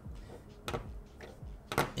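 A few light clicks and knocks as a large urushi-lacquered fountain pen is handled and shifts on a hard desktop: one about two-thirds of a second in, another near the end.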